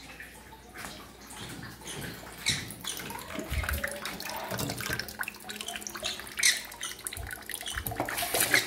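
Water splashing and dripping, an uneven run of small splashes and taps rather than a steady flow.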